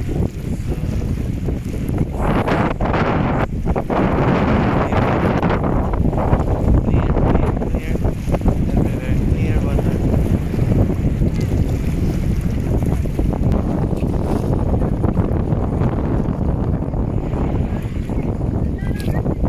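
Wind buffeting the microphone in a steady rush, with small sea waves washing against shoreline rocks.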